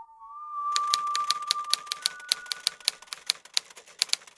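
Typewriter keys clacking in rapid typing, starting just under a second in, over a steady high whistled tone that steps up in pitch and fades out a little past the halfway mark.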